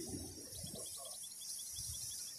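A fast, even series of short high chirps, about seven a second, from a small creature in the reeds, starting about half a second in. It sits over a steady outdoor hiss.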